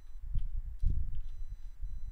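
A few faint computer keyboard keystrokes over a steady low rumble of room and microphone noise.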